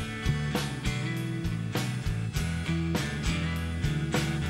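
Live rock band playing an instrumental passage: electric guitars and bass over a drum kit keeping a steady beat.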